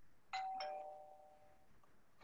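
A two-note electronic chime, a higher tone followed by a slightly lower one, ringing out for about a second and a half.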